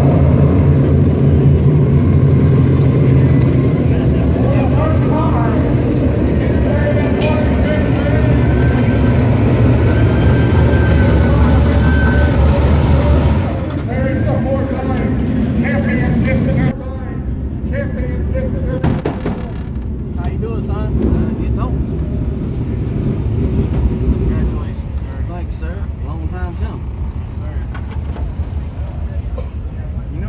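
Dirt late model race car's V8 engine running at low speed as the car rolls in, dropping away about 13 seconds in as it is shut off. Afterwards, indistinct voices of people around the stopped car.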